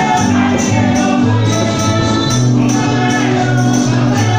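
Live gospel worship music: voices singing into microphones over an electronic keyboard's sustained bass notes, with a steady jingling percussion beat.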